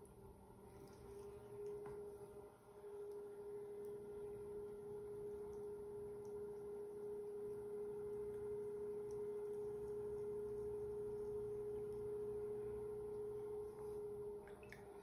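Electric potter's wheel running at speed, a quiet steady hum at one unchanging pitch.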